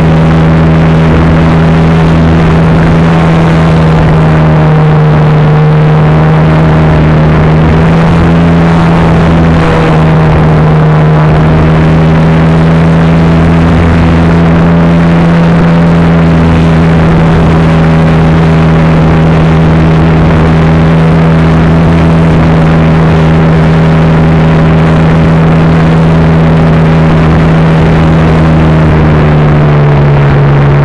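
Model airplane's motor and propeller heard loudly from a camera mounted on the plane, a steady droning hum at nearly constant pitch in cruise, with the pitch easing down slightly right at the end.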